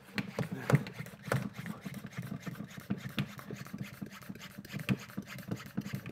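Hand-pump plunger of an Autoglym Easy Sprayer pressure sprayer being worked up and down, a stroke between one and two times a second, building pressure in the bottle.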